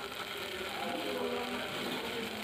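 Chopped onions and green chillies sizzling steadily in hot oil in a frying pan, with a dollop of ginger paste just added.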